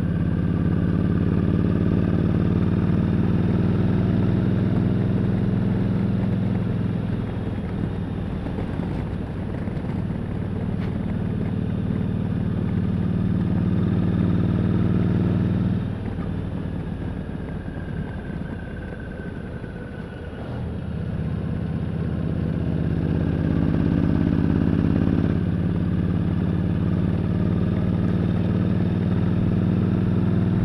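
Motorcycle engine running at road speed, heard from a camera on the rider's helmet. Just past the middle the engine note falls away for about five seconds, then builds again.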